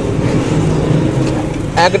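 Steady low background rumble, with a short spoken word near the end.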